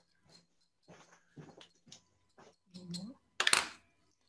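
Quiet clicks and taps of small hobby tools and a paintbrush being handled on a sheet of glass, with a short, louder burst of handling noise near the end.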